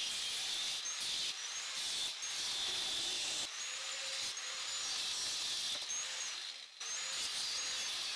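Angle grinder with an abrasive cut-off wheel cutting through a hard steel rod: a steady, high hiss with a faint whine, dipping briefly about two-thirds of the way through.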